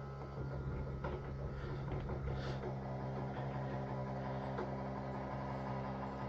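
Electric tilt-trim pump motor of a Volvo Penta 280 outdrive running with a steady hum, the trim system working.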